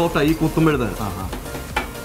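Meat sizzling on a flat griddle while two metal spatulas scrape and turn it, with one sharp clack of metal near the end.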